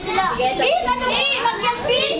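A group of children chattering and calling out over one another, their high voices rising and falling.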